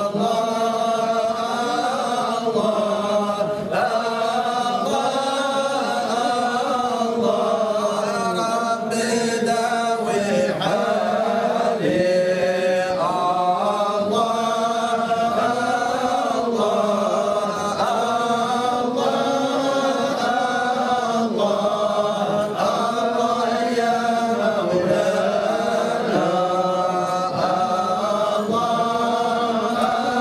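A group of men's voices chanting together, Sufi devotional singing with a slow melody that rises and falls in long held notes.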